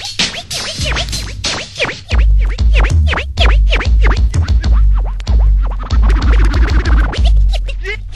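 DJ turntable scratching over an electronic hip-hop beat: a sample dragged rapidly back and forth in quick sweeping bursts, with a heavy bass line coming in about two seconds in.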